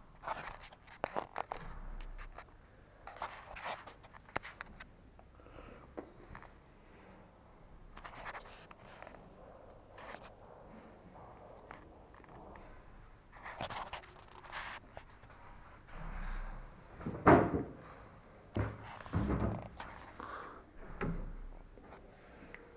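Irregular knocks, thuds and rustles of movement and handling, with the loudest thud about 17 seconds in.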